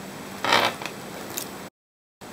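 A brief rustling scrape about half a second in and a faint tick later. The sound then cuts out to dead silence at an edit.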